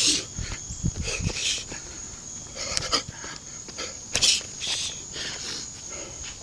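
Sharp, hissing exhales from a boxer breathing out with each punch while shadowboxing, coming in short bursts every second or so, the loudest about four seconds in. A steady thin high-pitched tone runs underneath.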